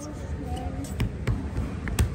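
A few dull thumps, about half a second apart, over the murmur of voices in a busy hall.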